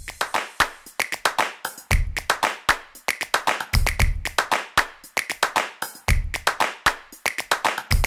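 Station ident jingle for the closing logo: percussive music made of rapid, clap-like hits, with a deep bass hit about every two seconds.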